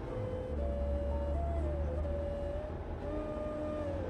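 Dramatic background score: a deep sustained drone with a single held note above it that shifts slightly in pitch.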